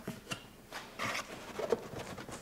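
Cardboard box flaps being handled and pulled open: soft scrapes and small knocks, with a brief rustling scrape about a second in.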